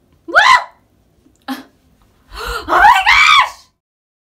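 A woman's wordless cries and gasps of pain as a TCA chemical peel burns her face: a short rising cry, a brief second one, then a longer, louder wavering cry near the end.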